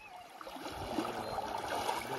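River water rushing and gurgling, a steady noise that builds about half a second in.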